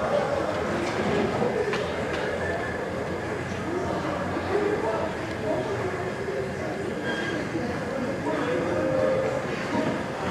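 Indistinct background voices over a steady rumbling noise, with a few faint knocks.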